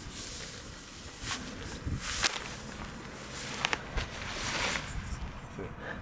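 Cloth rustling as a hooded training jacket is pulled off over the head, with footsteps and a few sharp ticks, about two and four seconds in.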